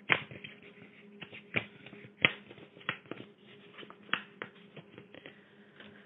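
Irregular clicks, taps and rustles of something being handled, about two or three a second at varying strength, over a faint steady hum on the phone line.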